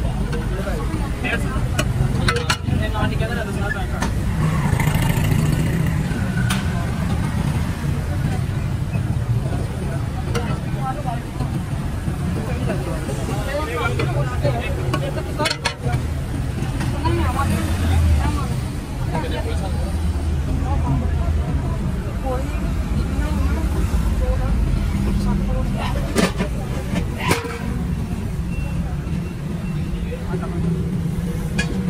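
Busy roadside food-stall din: a steady low engine rumble under background voices. A few sharp clicks, which fit metal utensils knocking on the pot and griddle, come about two seconds in, around the middle, and twice near the end.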